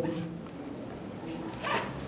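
A pause in amplified speech: the low room tone of a hall through the PA microphone, with one short breathy rustle near the end.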